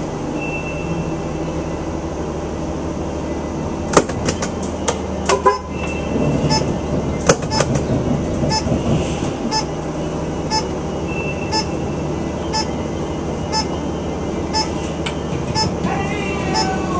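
Car engine and road noise heard from inside the cabin as the car drives through a cone course, with several sharp clicks about four to five seconds in and a few short high squeals. From about six seconds in, a regular ticking comes a little under twice a second.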